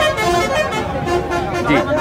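Men's voices talking over one another in a crowd.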